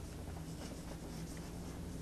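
Chalk writing a few words on a chalkboard, faint, over a steady low hum.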